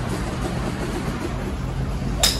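Steady low hum with an even hiss of background noise at an open-air driving range.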